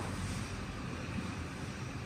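Steady low hum with a faint hiss: café room noise around an espresso bar.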